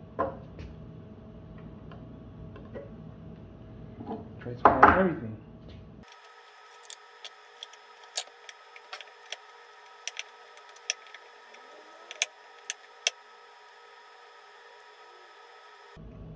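A JBL 2408H-2 compression driver and its replacement diaphragm being fitted together by hand. There is a louder rasping scrape about five seconds in, then about a dozen small sharp metallic clicks as the parts are pressed and seated against the driver's magnet.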